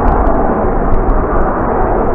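Loud, steady roar of an F-35 Lightning's Pratt & Whitney F135 turbofan jet engine as the fighter flies around to land, a deep rushing rumble with no breaks.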